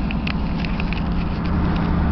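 Steady road and engine rumble inside a moving car's cabin, with a few faint light ticks.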